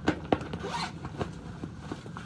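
Zipper on a tote bag being pulled open, heard as a run of short rasps and clicks, with the bag rustling as it is handled.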